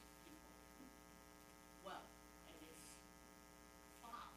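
Near silence: a steady electrical mains hum, with a faint, distant voice heard briefly about two seconds in.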